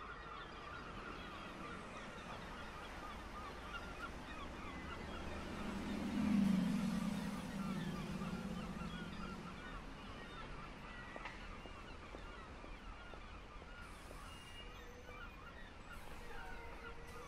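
A flock of birds calling quietly, many short overlapping calls throughout. A low hum swells up about six seconds in and fades over the next three seconds.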